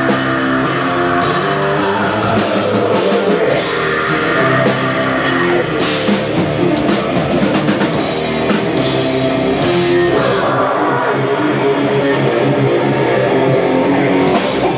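Heavy metal band playing live at full volume: electric guitars, bass guitar and drum kit. About ten seconds in, the crashing high end of the cymbals drops away, leaving the guitars and bass for the last few seconds.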